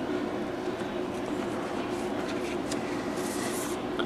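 Paracord rustling and sliding as a strand is worked through a Turk's head knot on a PVC pipe with a metal fid, faint against a steady low room hum, with a brief hiss of cord being drawn through near the end.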